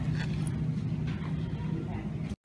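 Steady low hum of a supermarket's refrigerated freezer cases, with faint shopper voices in the background.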